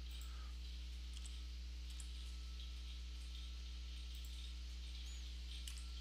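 A few faint computer mouse clicks over a steady low electrical hum from the recording setup.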